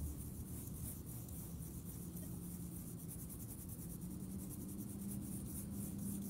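Toothbrush bristles scrubbing dirt off a small metal token, a quick run of soft, scratchy strokes.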